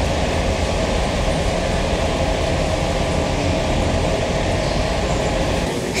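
Airport shuttle bus running, its steady engine and road rumble heard from inside the cabin; it cuts off suddenly near the end.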